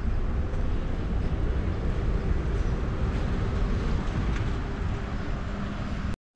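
Steady outdoor background noise: a low, unbroken rumble with a lighter hiss above it and no distinct events.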